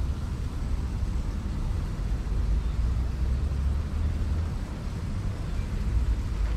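A steady low rumble that wavers in level, strongest at the very bottom, over a faint, even outdoor hiss.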